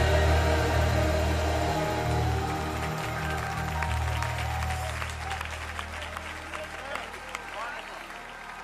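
Live gospel music ends on a held chord that fades out over about four seconds. The audience then applauds, with a few voices calling out near the end.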